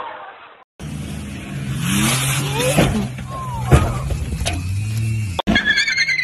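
A car engine running and revving hard, with its tyres squealing as the car slides in a drift. It starts after a brief dropout about a second in, and cuts out for a moment near the end.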